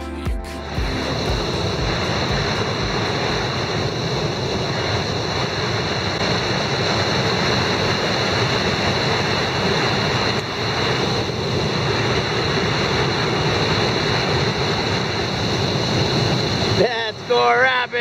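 Whitewater rapids running in a steady, unbroken rush of water. Near the end a person's voice shouts over it.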